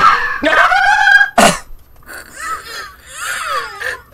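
A person's wordless cries: a loud drawn-out yell with its pitch sliding, a short sharp burst about one and a half seconds in, then quieter wavering, whimpering cries.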